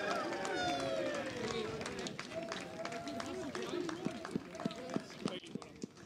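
Distant voices of footballers on the pitch shouting and calling out as they celebrate a goal, with scattered light knocks; the sound fades toward the end.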